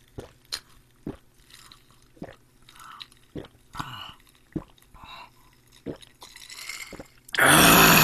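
A man gulping a cold drink from a cup: a run of swallows with soft clicks in the throat, then near the end a loud breathy 'ahh' of refreshment.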